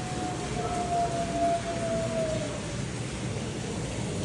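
An Arctic wolf howling: one long, steady howl that sags a little in pitch and ends a bit over halfway through. She is calling back and forth with a second wolf.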